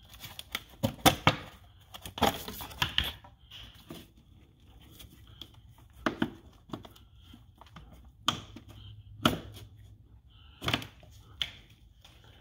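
Plastic engine-bay trim being pried and pulled free by hand: irregular clicks, snaps and scraping rustles in short bursts, the busiest stretches about a second and two to three seconds in, then single knocks every second or two.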